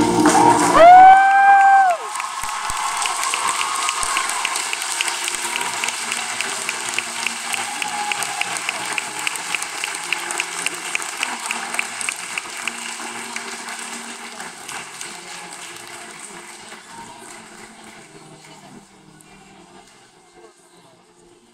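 A men's chorus ends its song on a held final note that rises and then falls in pitch, cutting off about two seconds in. Audience applause and cheering follow and slowly fade away.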